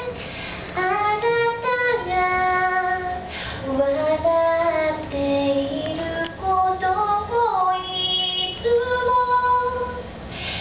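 A woman singing solo into a handheld microphone: long held notes that slide between pitches, with short breaths between phrases.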